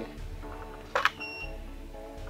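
A single DSLR shutter click about a second in, followed by a short high beep typical of a studio flash signalling it has recycled, over background music.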